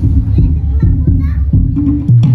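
Live dolalak dance music: low drum beats carry on under voices calling out, while the sharper percussion strokes mostly drop out.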